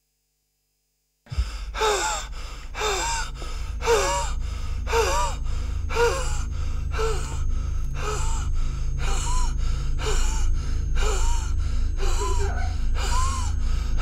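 A man gasping for breath in strained, rhythmic gasps about once a second, over a low steady drone. The gasps begin after about a second of silence.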